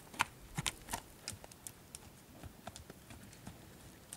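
A horse trotting around a dirt round pen: a quick, uneven series of hoofbeats, sharpest in the first second or two and fainter after.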